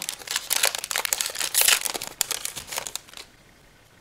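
Foil wrapper of a Yu-Gi-Oh booster pack crinkling as it is torn open and handled, a dense run of crackles that stops about three seconds in.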